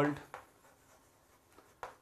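Chalk writing on a chalkboard: a few faint taps and scrapes of the chalk stick as a word is written.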